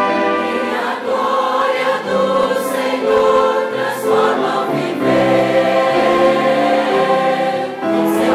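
Large mixed choir singing a Christmas cantata: sustained chords in several voice parts that shift every second or so.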